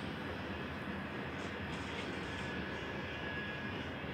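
Steady outdoor city background noise: an even hiss and rumble with no distinct events.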